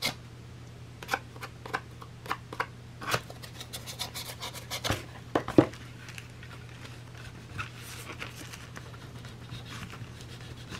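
Snap-off utility knife blade scraping against thick book board, shaving loose fibres from around a hand-drilled hole. It comes as a run of short scrapes and clicks in the first half, the loudest a little past halfway, then fainter scraping.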